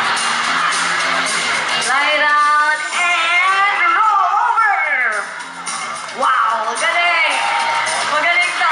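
Background music with a held low note, and voices whooping and calling over it, wavering up and down, from about two seconds in and again near the end.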